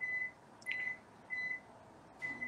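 Microwave oven beeping three times, evenly spaced about two-thirds of a second apart, each a short single high tone.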